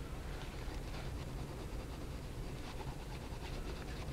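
Pencil held in a holder scratching over paper in short, faint shading strokes, over a steady low hum.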